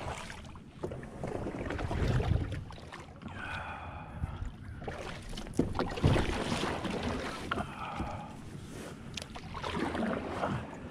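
Kayak paddle strokes pulling through calm water, the water sound swelling with each stroke, with some wind noise on the microphone.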